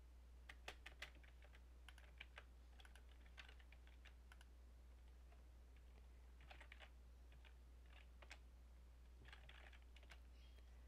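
Faint typing on a computer keyboard: scattered keystrokes in short runs, with pauses between them.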